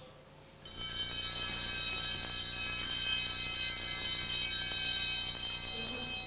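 Altar bells, a cluster of small sanctus bells, ringing continuously in a shimmering jingle. They start just under a second in, at the elevation of the consecrated host.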